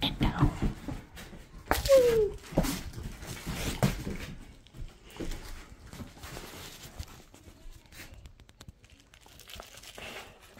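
A dog tugging at a toy: rustling, scuffing and handling noises as the toy is pulled, with a short falling squeal about two seconds in.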